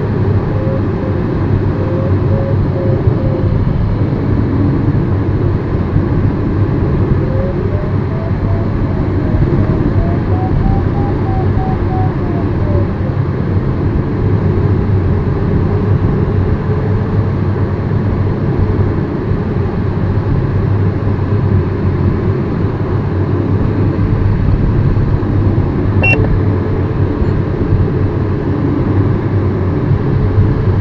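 Steady rush of airflow around an LS4 glider's cockpit and canopy in gliding flight, with no engine. Under it an audio variometer tone rises in pitch and turns to short beeps around the middle, then sinks back to a low steady tone. A single click near the end.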